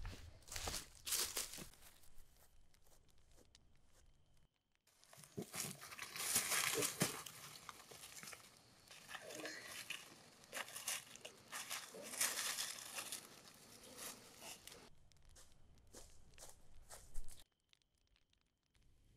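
Rustling and crunching of playing cards and dry ground litter as someone gathers up cards from the ground, in several irregular spells with short quiet gaps.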